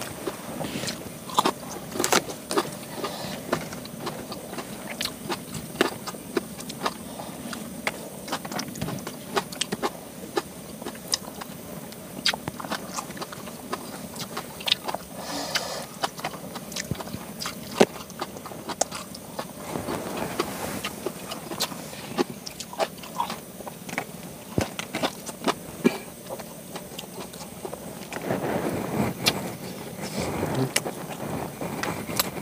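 People eating rice and fish by hand: many small clicks and taps of food being picked up and chewed, over a steady low background noise, with a louder rustle near the end.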